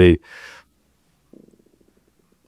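A man's last word cuts off, followed by a soft breath. About a second later comes a faint, low, rapidly pulsing rumble that fades out.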